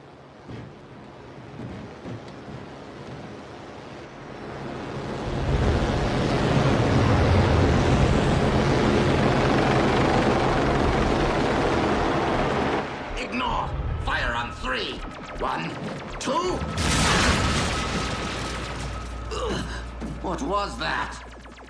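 Cartoon sound effects: a low rumble swells into a loud, sustained roar lasting several seconds, then gives way about 13 seconds in to shrill, warbling cries.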